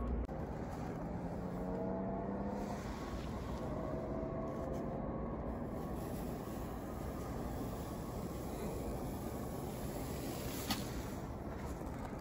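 Steady background hum of distant engine noise, with a faint drone that shifts a little in pitch in the first few seconds and a single small click near the end.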